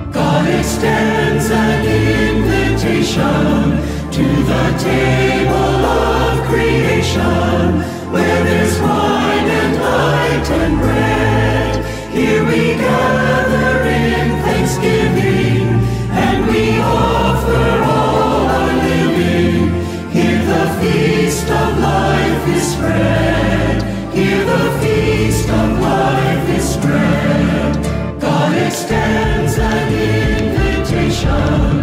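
A choir singing a Brazilian communion hymn in English, a steady flowing verse with no pauses.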